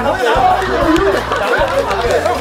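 Several people yelling and chattering over one another while they scuffle, with background music under the voices.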